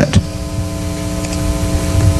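Room tone of an amplified lecture hall: a steady hum made of several fixed pitches over a low rumble and faint hiss.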